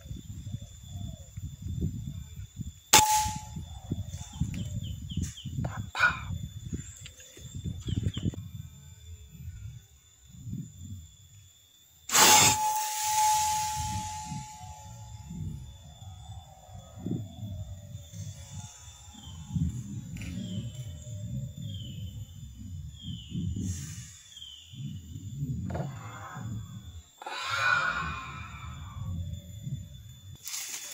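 Two shots from a PCP air rifle, about nine seconds apart, each a sharp crack followed by a brief ringing tone. The second shot is the louder and trails a hiss for a couple of seconds. Low handling rumble fills the gaps between them.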